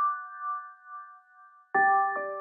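A held chime-like chord from a closing jingle rings out and slowly fades. Near the end a new, louder chord starts abruptly.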